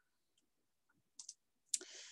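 Mostly near-quiet room tone broken by two faint clicks a little over a second in, then a sharper click near the end followed by a short, soft hiss.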